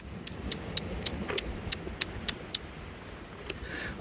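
Wind rumbling on the microphone by the sea, with a run of faint sharp clicks, about four a second.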